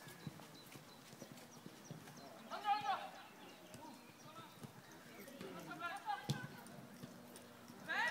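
Young footballers shouting to each other across the pitch during play: a few short, high calls, the loudest about two and a half seconds in, another around six seconds and one more at the end.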